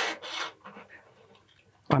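Wound low-E guitar string rasping as it is pulled through a Stratocaster's tremolo bridge, metal sliding against metal. The scrape is loudest right at the start and dies away within the first half second.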